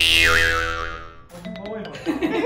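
A comic "boing" sound effect added in editing: a sudden springy tone that wobbles down in pitch and dies away over about a second. A few light clicks and a voice follow near the end.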